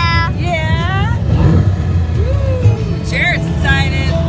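Amusement-ride vehicle with a steady low rumble, music from its seat speakers, and a young girl's high-pitched voice laughing and squealing at the start and again around three seconds in.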